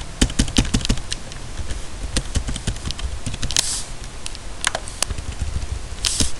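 Typing on a computer keyboard: a quick flurry of keystrokes in the first second, then scattered keystrokes.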